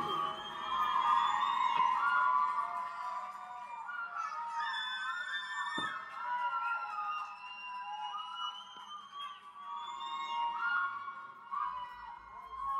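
Electric guitar feedback from amplifiers left on after the final song: several sustained high tones ringing and slowly bending and wavering in pitch. A single sharp knock about halfway through.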